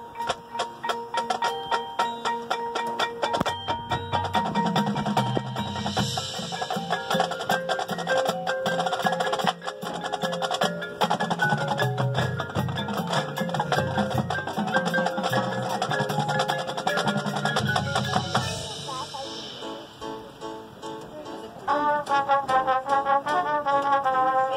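Marching band playing its field show, with mallet percussion and drums prominent among sustained band chords. The music thins out and drops in volume about 18 seconds in, then the band comes back in louder near the end.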